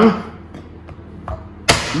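A palm slapping down on the flat of a chef's knife blade to crush garlic cloves against a wooden cutting board: one sharp smack near the end, after a couple of faint taps.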